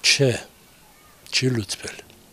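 A man's voice speaking two short phrases, the first at the start and the second about a second and a half in, with a pause between.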